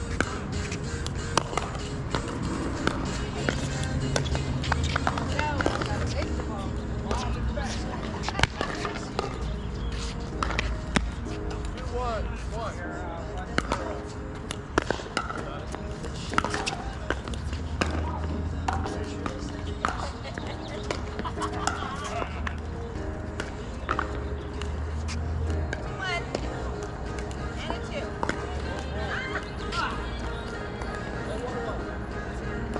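Pickleball paddles striking a hard plastic ball during a rally: sharp pops at irregular intervals, some louder than others. Background music and distant voices from the surrounding courts run underneath.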